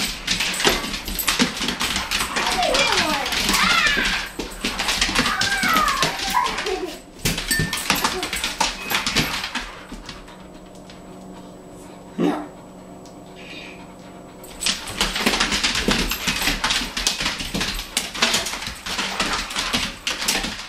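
German Shorthaired Pointers scrambling and jumping on a tile floor, claws clicking and skittering in quick runs, with high whines and yips in the first few seconds. There is a quieter lull in the middle with a single short vocal sound, then the scrabbling picks up again near the end.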